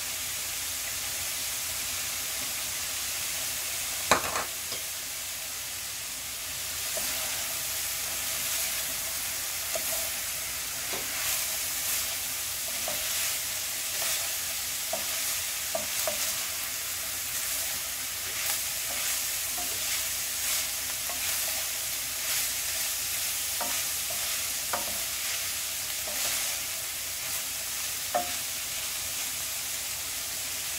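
Bitter melon and ground beef sizzling in a hot frying pan, with a wooden spatula scraping and tapping through the food as it is stirred from about seven seconds on. A single sharp knock about four seconds in.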